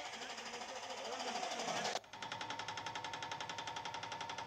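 Faint, muffled voices in background noise. After an abrupt cut about two seconds in, a rapid, even pulsing with a steady tone runs on.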